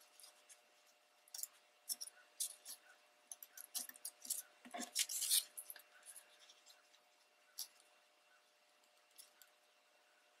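Faint, scattered rustling and light crinkling of scrapbook paper and cardstock being folded and pressed into place by hand, busiest in the first half and thinning out later.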